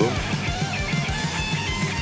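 Old-school thrash metal recording playing: an electric guitar lead holding and changing notes over distorted rhythm guitar and a fast drum beat.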